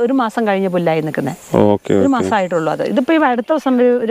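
A woman talking continuously in Malayalam.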